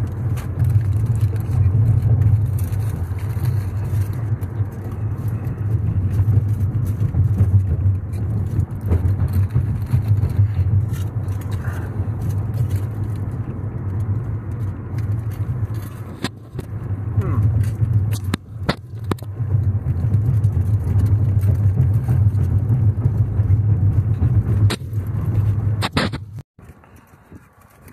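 Car cabin noise while driving: a steady low road and engine rumble, with a few short clicks, dipping briefly about two-thirds of the way through.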